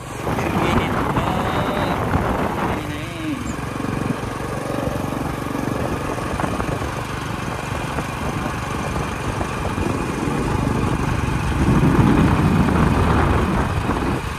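Steady rushing wind noise on the microphone from riding along a road, with brief voices in the first few seconds and again near the end.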